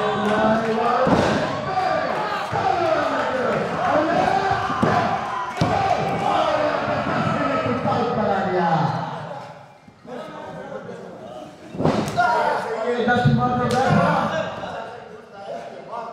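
Wrestlers' bodies slamming onto the canvas of a wrestling ring several times, the first about a second in, with voices talking over it.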